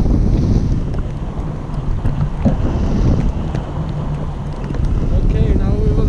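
Wind from tandem paraglider flight buffeting the camera microphone: a heavy, rushing low rumble that eases somewhat in the middle and builds again near the end.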